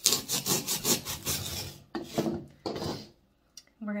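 Kitchen knife sawing through a block of green floral foam: a quick run of scraping strokes for about two seconds, then a couple of shorter ones before it stops about three seconds in.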